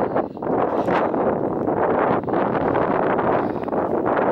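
Wind buffeting the microphone: a loud, steady rush with a brief lull about a third of a second in.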